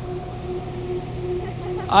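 Steady rushing of water pouring over a dam spillway, with a constant low hum underneath. A short laugh begins at the very end.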